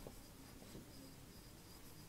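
Near silence, with the faint scratch of hand-writing on a board.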